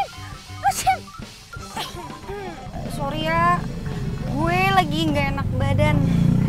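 Short background-music notes, then two drawn-out wordless vocal cries about three and five seconds in, over a low hum that builds up.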